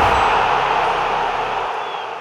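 Logo-ident sound effect: a loud hiss of static-like noise that slowly fades out, the tail of a video intro sting.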